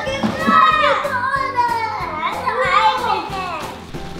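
Children's excited wordless voices, squeals and exclamations, over background music.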